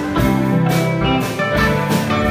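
Live rock band playing: electric guitar over a drum kit keeping a steady beat of about two hits a second.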